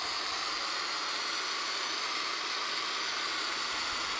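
Corded electric drill with a paddle mixer running steadily, stirring liquid rubber waterproofing mastic in a plastic bucket: an even motor whir with a faint high whine.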